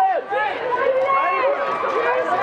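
Several voices of red-carpet photographers talking and calling over one another, without a break.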